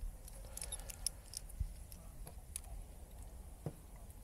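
Faint, scattered small clicks and handling sounds of hands fitting a rubber O-ring and an SP Connect handlebar clamp onto a motorcycle handlebar, with a sharper click near the end.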